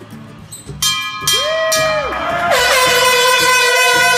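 A brass showroom sales bell struck several times by its rope, ringing, followed from about halfway by a loud, sustained horn-like blast, the loudest sound, that starts with a short downward slide in pitch.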